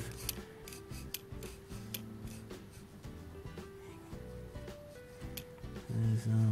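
Light metal clicks and rubbing from the steel spindle of an old Mitutoyo dial indicator being slid in and out by hand, moving freely with no resistance after cleaning, with quiet background music underneath.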